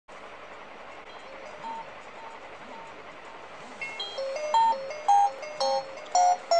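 Smartphone alarm ringtone playing a repeating chime melody, faint at first and getting much louder from about four seconds in.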